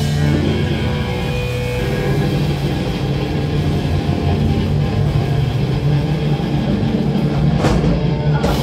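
Live instrumental rock band playing loud: electric guitar and bass over a drum kit, with a cymbal crash near the end.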